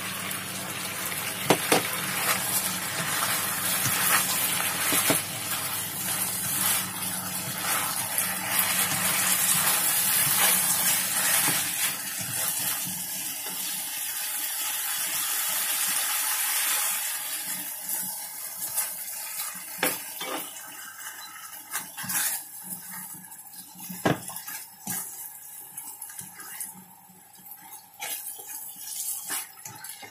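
Food sizzling in a hot wok while a spatula turns it, scraping and knocking against the pan. The sizzle is loud for the first half and fades after about seventeen seconds, leaving the spatula's scrapes and taps more distinct.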